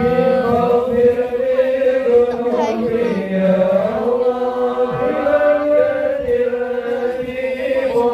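A group of men chanting devotional praise of the Prophet (sholawat) in unison through microphones and loudspeakers, with long held notes and gliding melodic lines.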